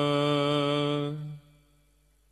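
A man's voice chanting Gurbani holds one long, steady note at the end of a line, then cuts off about a second and a half in.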